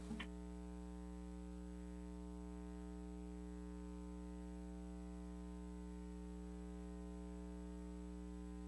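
Steady electrical mains hum with a stack of evenly spaced overtones, unchanging throughout.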